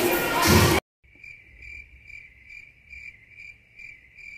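Loud hallway chatter cuts off abruptly under a second in. Then a cricket chirping sound effect plays, a steady high chirp pulsing about three times a second, over otherwise silent audio.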